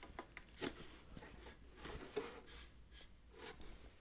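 Faint handling sounds of a drum rack clamp being slid onto the rack's tube: a few soft clicks and rubs, mostly in the first second and again about two seconds in.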